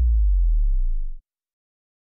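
The last note of an electronic dance-pop track: a deep, steady electronic bass tone left ringing after the drum machine stops, cutting off abruptly a little over a second in.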